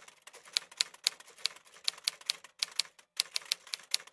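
Typing sound effect: irregular keystroke clicks, several a second, with a couple of short pauses. It goes with text being typed out letter by letter.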